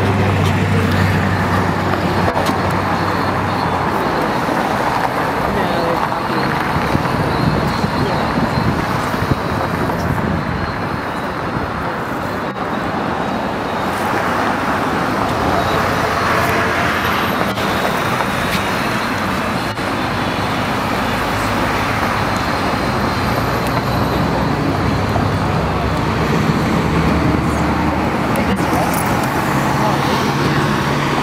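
Steady road traffic noise from passing vehicles, with indistinct voices mixed in.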